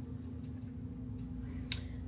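A steady low hum, with one short sharp click near the end.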